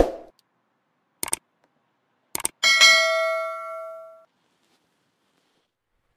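Sound effects of a subscribe-button animation: a brief burst right at the start, a click about a second in, a double click, then a bell ding that rings and fades away over about a second and a half.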